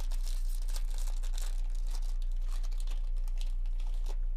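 Foil wrapper of a 2024 Topps Series 2 baseball card pack crinkling and tearing as it is ripped open by hand: a rapid, continuous run of crackles over a steady low hum.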